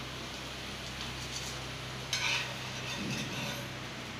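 A metal spatula scraping on a cutting board as rolled masala dosa is cut into small pieces and lifted, with one longer, brighter scrape about two seconds in, over a steady background hiss.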